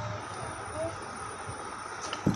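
Steady background noise with a thin high whine, and a few faint short squeaky chirps, one just before the start and one a little under a second in.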